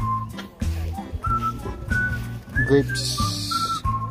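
Background music: a whistled melody line stepping from note to note over a steady bass, with a brief hiss about three seconds in.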